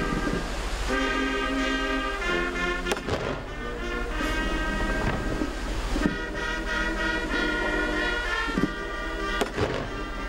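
Military brass band playing slow music, with long held chords that change every second or so.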